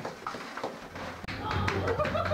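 Scattered light taps and knocks amid children's chatter. A low steady hum comes in about a second in.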